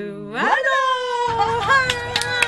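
A woman's voice sliding upward and then holding one long, high, drawn-out cheer-like note, with hand clapping starting near the end.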